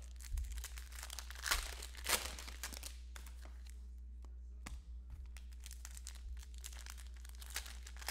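Foil trading-card pack wrappers crinkling as they are handled and torn open, in scattered short bursts that are loudest about one and a half to two seconds in, with a quieter stretch in the middle.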